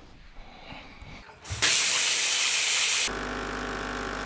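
A loud hiss starts suddenly about a second and a half in and lasts about a second and a half. It gives way to a coffee machine's pump humming steadily as coffee pours into a mug.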